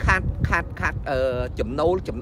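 A man talking, drawing out one syllable for about half a second near the middle.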